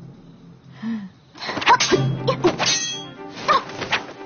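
Sword-fight sound effects: metal blades clashing with ringing clangs and short shouts, starting about one and a half seconds in after a quieter opening.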